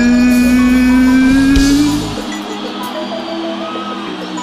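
Live band music: one long held note slowly rising in pitch over a heavy low end. About two seconds in the band drops away, leaving quieter, sparse notes.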